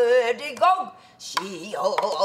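A woman's pansori voice holding a sung note, breaking off, then coming back in a wavering, bending line. A single sharp stroke of the stick on the buk barrel drum falls about two-thirds of the way through.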